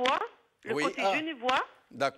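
Speech only: voices talking in a phone-in conversation.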